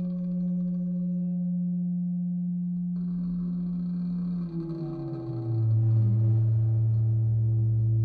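Background music: a dark, sustained low drone that holds one note, gains a higher shimmering layer about three seconds in, then slides down to a lower note and holds there.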